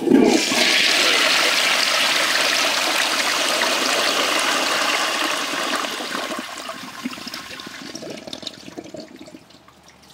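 1927 Standard Devoro flushometer toilet flushing. The flush starts suddenly with a low thump, then runs as a strong rush of water for about five seconds. It tapers off into gurgling and trickling near the end.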